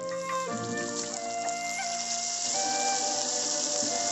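Hot oil sizzling steadily under a whole fish shallow-frying on a flat iron griddle, mixed with background music of long held notes.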